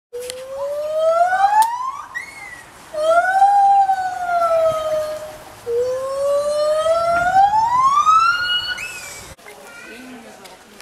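White-handed (lar) gibbon singing: three long, clear whooping notes that glide in pitch. The first and last rise steeply and the middle one swells up and then falls, with a short high note after the first. The song cuts off suddenly near the end.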